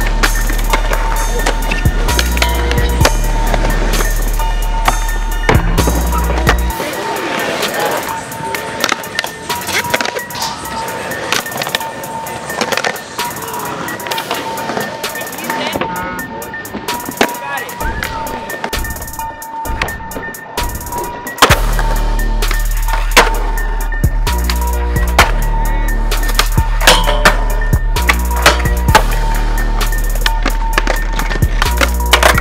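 Skateboarding on concrete: tail pops, board landings and wheels rolling, over a music track with heavy bass. The bass drops out from about seven seconds in and comes back about fifteen seconds later.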